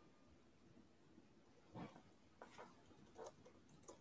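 Near silence, with a few faint short clicks in the second half.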